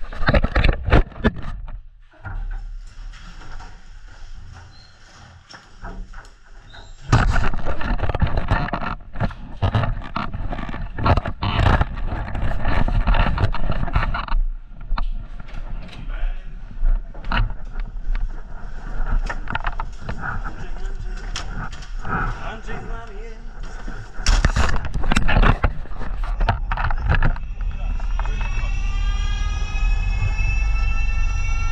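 Knocks and clatter of a firefighter's gear and a fire engine's cab, with indistinct voices; a deep engine rumble sets in about seven seconds in. Near the end a siren starts to wind up, its pitch rising.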